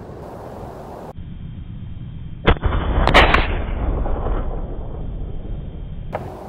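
A single shot from an 18-inch-barrel AR-15 firing a 77-grain match round, a sharp crack about two and a half seconds in. Half a second later come further cracks and a long echo that dies away slowly.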